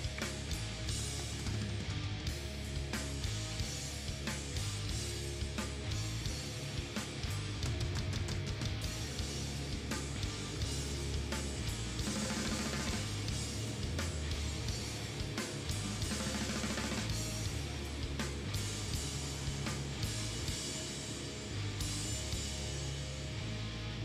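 Rock music with guitar and drums, a steady beat under shifting bass notes.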